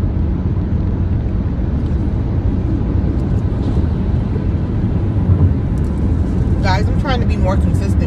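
Steady low rumble of road and engine noise inside a moving car's cabin at highway speed.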